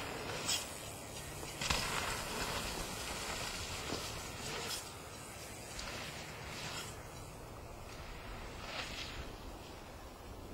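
Mountain bike riding over dirt jumps: tyre noise on loose dirt with a sharp knock about half a second in and another just under two seconds in, followed by a few seconds of louder rushing noise that fades by about five seconds.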